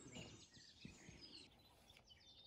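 Near silence with faint, high bird chirps and short whistles.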